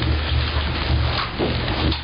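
Dense rustling, crackling noise over a steady low hum, on an old cassette recording.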